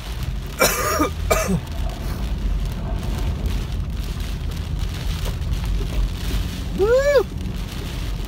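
Steady low rumble of a car cabin driving through heavy rain and standing water. A man coughs twice about a second in, and makes a short vocal sound near the end.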